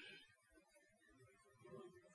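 Near silence: a pause in a spoken monologue with only faint background noise.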